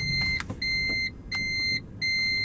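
An electronic beeper sounding a steady high tone in repeated long beeps, each about half a second, with short gaps between; two full beeps fall in this stretch.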